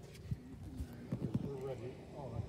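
Faint talking in the background with a few soft, irregular knocks, like footsteps or the handling of the phone.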